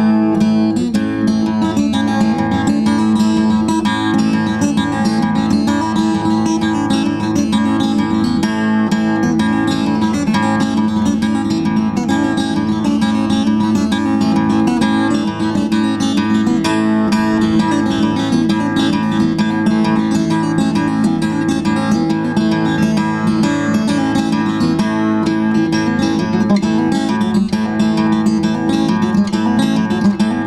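Sardinian guitar (sa ghitarra, chitarra sarda) played solo without a break: a traditional Sardinian dance tune.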